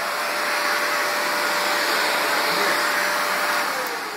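Vacuum cleaner running steadily, its hose drawing at a person's sock feet. Near the end its whine starts to fall in pitch as the motor winds down.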